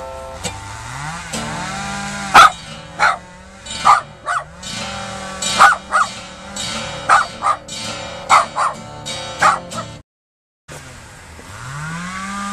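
A small dog barking about a dozen times in sharp bursts over acoustic guitar playing, while a chainsaw engine drones, its pitch rising and falling as it revs. The sound cuts out completely for under a second about ten seconds in.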